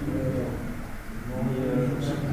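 Low murmur of men's voices talking in the background of a billiards hall, with no ball strikes.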